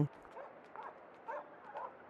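A small dog yipping faintly, about four short calls, over a light crackle.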